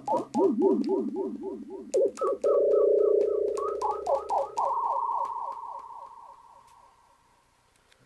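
Homemade one-button synthesizer on an STM32F4 Discovery microcontroller board playing siren-like electronic tones through a delay effect. A fast warbling tone and rows of repeated falling chirps give way to held tones a step apart, and the echoes fade out over the last few seconds.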